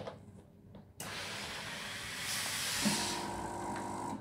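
Floor steam cleaner releasing steam: a steady hiss starts suddenly about a second in. A buzzing hum joins it near the end.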